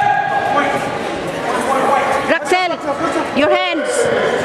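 High-pitched voices shouting in a large, echoing gym: a held call at the start, then two short rising-and-falling yells about halfway through and near the end, over steady crowd noise.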